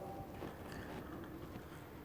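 Faint scraping and small clicks of a screw cap being twisted onto a bottle.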